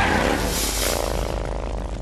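Title-card sound effect: an engine revving, its pitch gliding about half a second in and then holding a steady note that fades out near the end.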